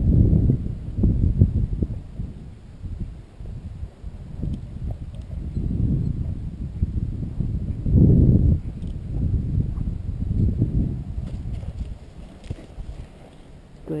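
Horse stepping around in sand, its hooves making low thuds that come in several bunches.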